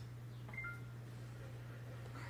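Two short electronic beeps about half a second in, the second lower in pitch than the first, over a steady low hum.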